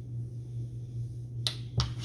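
Two sharp clicks close together near the end, over a steady low hum.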